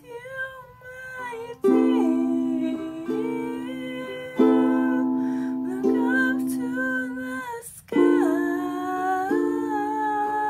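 A woman singing a slow song with wavering held notes, accompanied by chords strummed on a string instrument and left to ring, with fresh chords struck three times.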